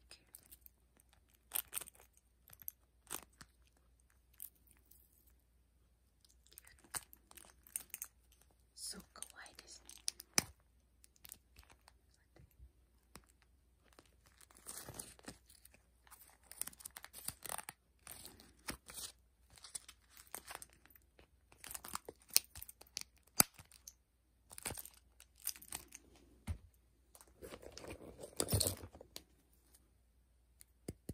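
Close-up handling of a clear plastic card case with a snap button that holds a mini notebook: many sharp plastic clicks and taps, with short bursts of crinkling and rustling as the case is opened and its pages turned. The largest rustle comes near the end.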